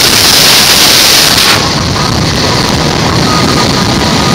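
Wind rushing over the microphone with a rumbling roll underneath while moving along a road, gustier and hissier in the first second or so.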